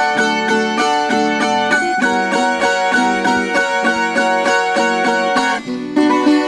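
A Colombian tiple and a guitar playing a pasillo: the melody picked in fast repeated strokes over the guitar's accompaniment, the chords changing about two seconds in and again near the end.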